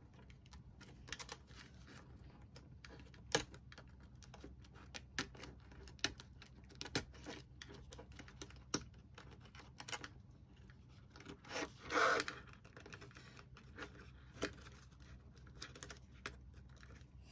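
Clear plastic budget envelopes being handled and fitted onto the metal rings of a ring binder: scattered small clicks and plastic rustles, with a longer, louder crinkle about twelve seconds in.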